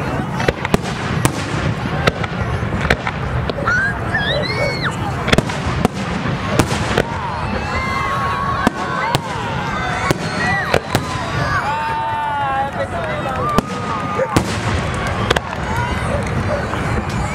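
Aerial fireworks shells bursting overhead: a long irregular run of sharp bangs, sometimes several a second, over a steady background rumble.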